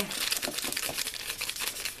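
Silhouette chalkboard eraser sponge rubbed over a chalkboard card, wiping off chalk writing: a continuous dry, scratchy scrubbing.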